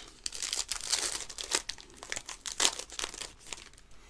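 Foil trading-card pack wrapper being torn open and crinkled by hand: a run of irregular crackles that dies down near the end.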